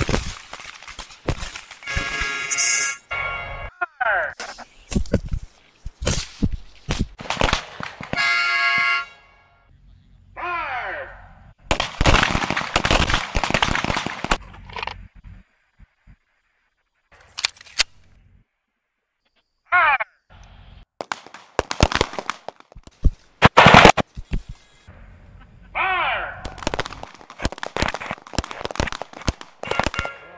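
Handgun fire on an outdoor range: strings of rapid pistol shots with short pauses between them, the loudest shot about two-thirds of the way through. Voices and a couple of held tones are heard between the strings.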